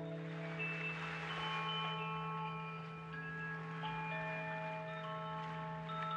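Quiet ambient music outro without vocals: a steady low drone under scattered ringing, chime-like tones at different pitches, each held for a second or more.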